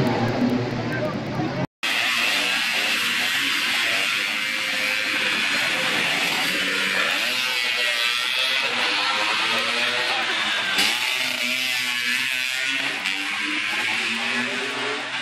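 Rock music that cuts off abruptly about two seconds in, followed by modified Vespa scooters racing past, their engines revving up and down, over the chatter of a crowd of spectators.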